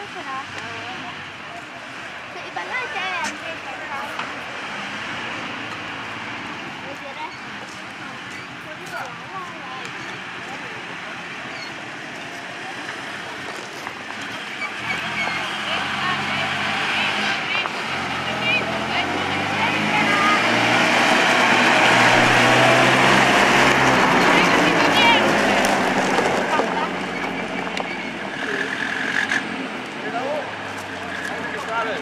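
Engine of a WWII Italian armoured car running as it drives. The engine grows louder from about halfway as the car comes close, its pitch stepping up and down, and people talk in the background.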